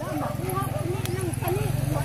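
An engine running steadily with a low, pulsing hum, while voices talk over it.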